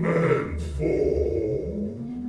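Live acoustic baroque-metal performance: a sung note ends in the first half second, then a low, rough vocal sound follows for about a second.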